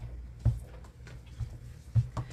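A stamp being tapped lightly onto an ink pad to ink it up, a few soft irregular taps over a low steady hum.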